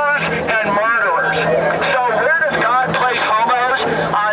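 A man's speech amplified through a handheld microphone and loudspeaker, loud and continuous, over a steady low hum.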